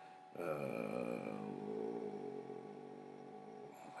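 A man's long, drawn-out hesitation sound, "uhhh," held on one slightly falling pitch for about three and a half seconds and fading toward the end.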